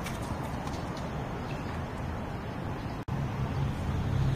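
Steady outdoor background noise with a low hum and a few faint taps, with no clear racket strike. The sound drops out sharply for an instant about three seconds in.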